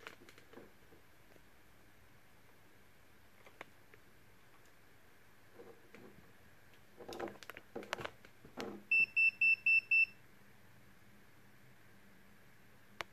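An electronic beeper sounds five quick, high, evenly spaced beeps near the end, about five a second. A few soft clicks come just before them.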